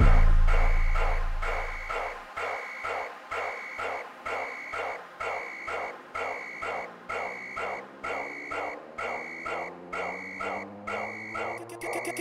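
Gqom electronic dance music: a deep bass boom dies away over the first two seconds. A sparse pattern of short repeating stabs follows, a little over one a second, over a slowly rising tone. A rapid stutter starts just before the end.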